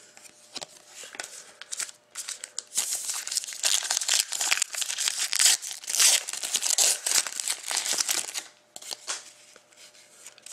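A few light clicks of cards being handled, then from about three seconds in the foil wrapper of a 2013-14 Panini Titanium hockey card pack is torn open and crinkled for several seconds.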